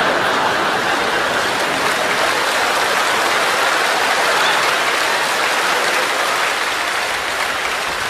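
Audience applauding steadily, the clapping easing off slightly toward the end.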